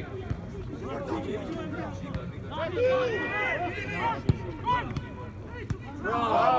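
Several voices shouting across an outdoor football pitch during play, loudest from about two and a half seconds in. A single sharp thud comes a little after four seconds.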